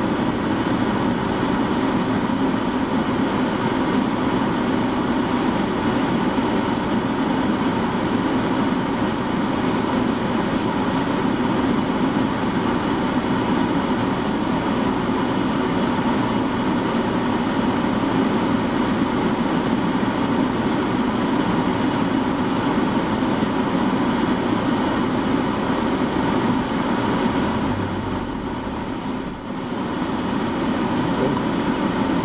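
Steady engine hum heard from inside a car's cabin while it idles, with a faint steady whine running through it; the sound drops briefly near the end.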